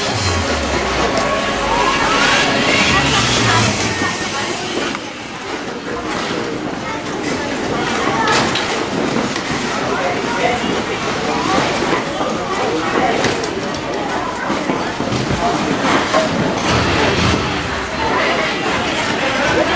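People's voices and chatter mixed with dance music, loud and busy throughout. A rising pitch sweep runs from about one to three and a half seconds in.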